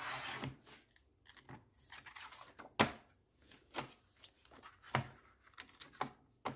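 Thin cardboard being cut out by hand: a rustling scrape at first, then a few sharp crunching cuts at irregular intervals, the loudest about three seconds in.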